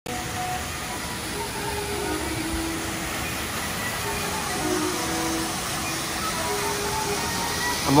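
Steady rushing of a man-made rockwork waterfall, with faint melodic background music over it.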